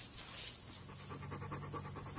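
A dog panting in quick, even breaths that start under a second in, over a steady high-pitched insect buzz.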